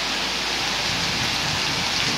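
A steady, even hiss of noise with no tune or voice in it.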